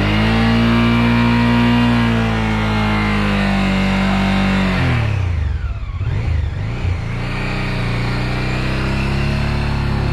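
Honda Africa Twin's V-twin engine held at high revs as the bike, stuck in a muddy rut, spins its rear wheel. About halfway through, the revs drop away, and from about seven seconds the engine runs on at lower, steady revs.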